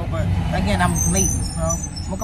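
Steady low rumble of road and engine noise inside a moving car's cabin, with a person's voice talking over it during the first part.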